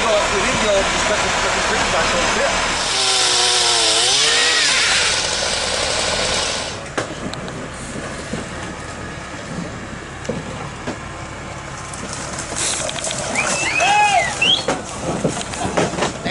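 Power saw trimming tree limbs, a loud steady buzz that stops about seven seconds in. After it comes a quieter rumble with scattered clicks and a few voices near the end.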